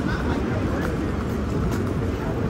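Busy city street ambience: a steady low rumble of traffic under the overlapping voices of passing pedestrians.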